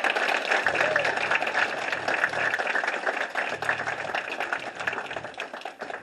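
Audience applauding: a dense patter of clapping that gradually dies away toward the end, with some voices mixed in.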